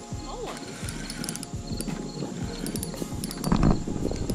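Spinning reel being cranked to bring in a hooked fish: a run of irregular clicks and knocks from the reel and rod handling, with a louder thump about three and a half seconds in.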